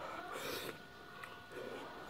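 A man's short vocal sounds made through a mouthful of noodles, twice, with a brief breathy hiss after the first.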